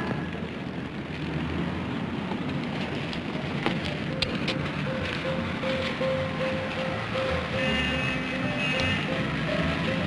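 Film soundtrack of steady city street noise under a background music score, with a long held note through the second half.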